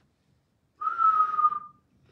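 A single breathy whistle from the preacher, one held note lasting about a second and sagging slightly in pitch.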